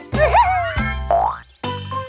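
Cartoon boing sound effects for a hop: a springy twang with a wobbling pitch, then a rising one about a second later. Both sit over cheerful children's background music, which breaks off briefly near the end.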